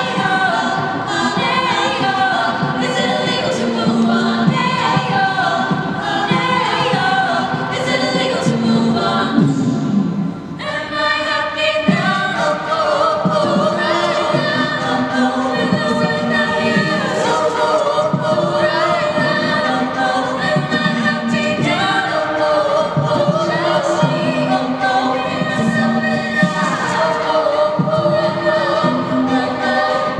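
All-female a cappella group singing pop in multi-part harmony, a lead voice over backing voices, with vocal percussion keeping a beat beneath. The sound thins briefly about ten seconds in, then the full group comes back in.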